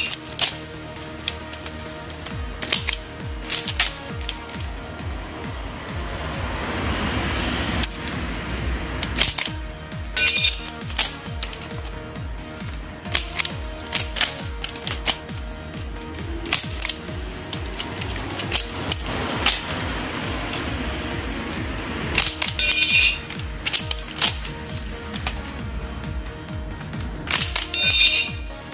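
Background music, with sharp clicks and clinks several times over it, from a spring-powered pump-action salt blaster firing and small metal targets being hit and knocked over.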